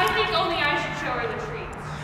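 A person's voice holding one long vowel sound, slowly falling in pitch and fading out, over a faint steady low hum.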